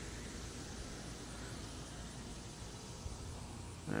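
Faint, steady outdoor background noise: a low rumble with a light hiss over it, without any distinct event.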